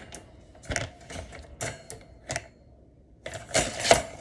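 Irregular sharp clicks and knocks with rubbing in between, from a phone being handled right against its microphone, ending in a quick cluster of knocks.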